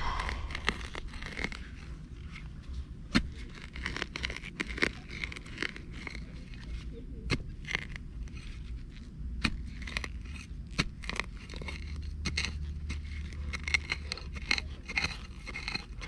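Serrated digging knife scraping and cutting into dry soil full of tree roots, in a run of irregular scrapes, crackles and clicks.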